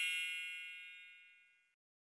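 A single bright, bell-like metallic ding, struck just before, ringing on high and clear and fading out about a second and a half in.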